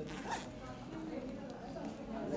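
A short rasping noise lasting about a quarter of a second near the start, over faint voices talking.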